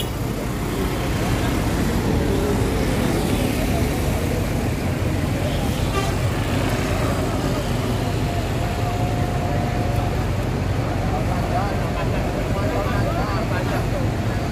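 Diesel engine of a stopped intercity coach idling steadily, under the chatter of a crowd of passengers gathered around it.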